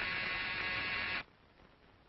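An electric buzzer sounding once: a steady buzz of about a second and a quarter that starts abruptly and cuts off suddenly.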